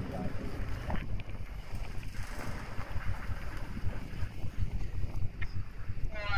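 Wind rumbling and buffeting on a handheld camera's microphone, unsteady and gusty, with handling noise and a couple of small clicks.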